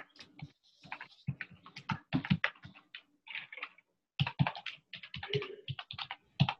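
Typing on a computer keyboard: quick, irregular runs of keystrokes with a brief pause partway through.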